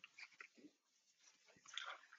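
Near silence: room tone with a few faint soft sounds, one a little louder briefly near the end.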